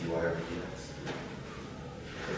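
A man's voice speaking briefly near the start, then fainter talk and room noise in a lecture room.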